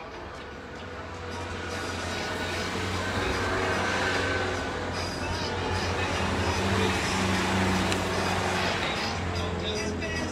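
A motor vehicle engine running close by, its steady low hum growing louder over the first few seconds and then holding, with indistinct voices in the background.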